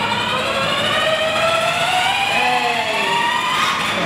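Electric motor and gearbox of a child's battery-powered ride-on toy car whining as it drives across the floor, the whine rising slowly in pitch and fading out near the end.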